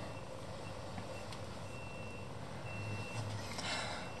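Faint background hum with a few high-pitched electronic beeps of uneven length: a short one about half a second in, a longer one from about 1.4 to 2.2 seconds, and another near 3 seconds.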